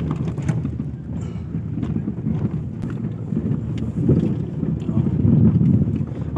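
Car cabin noise while driving over a rough dirt and gravel road: a steady low rumble of engine and tyres, with faint scattered knocks.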